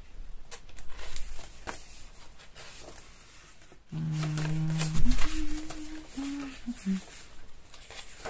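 Paper pages of a handmade journal rustling and flipping, then a voice humming a few steady notes that step up and down in pitch for about three seconds, starting about four seconds in.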